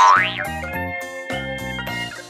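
Bouncy background music with a cartoon boing sound effect at the start: one quick, loud pitch sweep up and back down.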